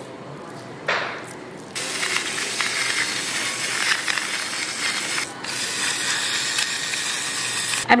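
Electric gravity-fed grinder's motor grinding coarse pink salt over salmon, a continuous mechanical grinding. After a brief break about five seconds in, a second run of grinding, pepper this time.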